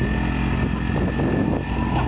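Four-wheeler (ATV) engine running steadily under load as it tows a small boat on a rope across a pond.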